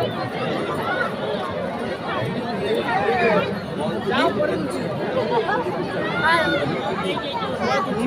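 Many people talking at once close by: a steady babble of overlapping conversation voices.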